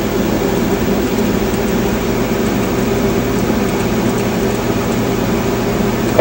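A 1960 Philco tube AM radio, switched on for a power-up test after a capacitor replacement, puts out a steady hiss of static with a low hum through its speaker, with no station tuned in.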